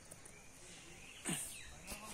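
A short animal cry a little over a second in, falling steeply in pitch, followed by a sharp click near the end.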